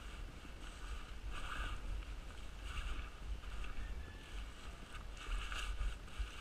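Wind rumbling on the microphone, with short rustling and scuffing sounds every second or so as a paragliding harness is handled on dirt ground.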